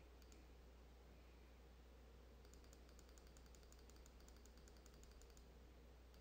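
Near silence: room tone with a low steady hum, and faint quick ticking, about five a second, from a little before halfway in.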